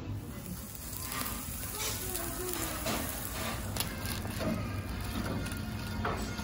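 Steady crackling, sizzle-like noise with scattered small clicks, and faint voices in the background.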